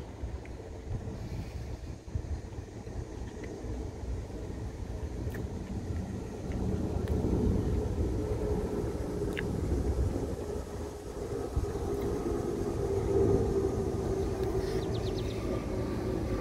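Outdoor background: a low rumble and the steady hum of a motor vehicle's engine from road traffic, growing louder about six seconds in and holding to the end.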